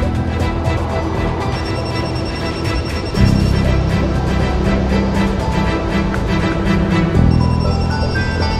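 Background soundtrack music with deep sustained chords, moving to a new chord about three seconds in and again near the end.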